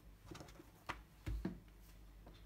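A few faint taps and soft thumps of hands smoothing and flattening a sheet of puff pastry on a countertop.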